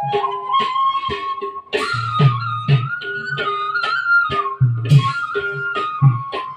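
Bhaona stage music: a held, sliding melody on a flute-like wind instrument over a steady drum beat with sharp cymbal strikes. The melody rises about two seconds in and eases back down near the end.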